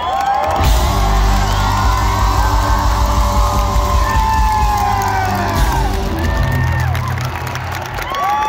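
A live garage rock band's amplified guitars, bass and drums ringing out on a held closing chord while a large crowd cheers, whoops and claps. The band's sound thins out near the end as the cheering carries on.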